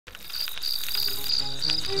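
Crickets chirping in a pulsing rhythm of about three chirps a second over a continuous high buzz, fading in at the start; low, held music notes come in about halfway through.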